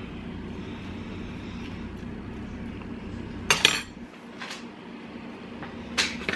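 A metal fork stirring butter through cooked spaghetti squash strands, with a low steady hum underneath. A little past halfway through comes a sharp clink of metal cutlery, then a fainter one.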